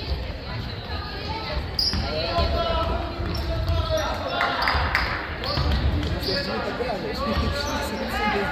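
Handball match on a hardwood sports-hall floor: the ball bouncing as it is dribbled, running footsteps and players' shouts, echoing in the large hall.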